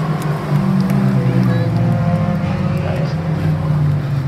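Engines of several junior sedan race cars running together as the field laps the dirt oval, their notes overlapping and shifting in pitch as the cars pass.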